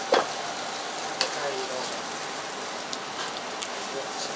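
Black bean sauce with diced beef and vegetables bubbling in a wok, a steady sizzle. A metal ladle stirs it, knocking against the wok with one loud clack just after the start and a few lighter clicks later.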